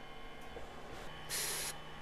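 A short hiss lasting under half a second, about one and a half seconds in, over a faint steady hum.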